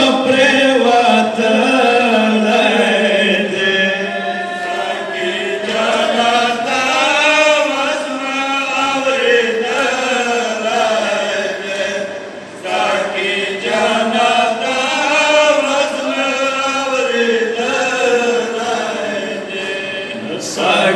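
Male voices chanting a Pashto noha (matam lament) together, with long, wavering held notes and a brief pause between lines about two-thirds of the way through.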